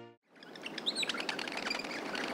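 Small birds chirping and tweeting over a soft outdoor hiss, fading in after a brief moment of silence.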